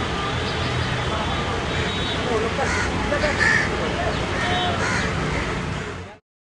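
Riverside ambience: crows cawing several times over a steady low engine hum, with indistinct distant voices.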